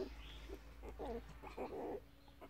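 Very young puppies giving several faint, short squeaks and whimpers as they push and jostle against each other in a pile.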